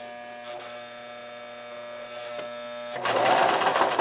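Electric sewing machine running with a steady hum, growing louder and noisier about three seconds in as it stitches faster.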